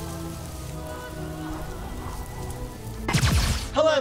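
Intro music of held synth tones over a steady rain-like hiss, ending in a loud sweeping whoosh about three seconds in.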